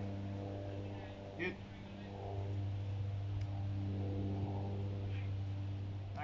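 A steady low hum, like an engine or motor running at constant speed, with faint brief sounds over it.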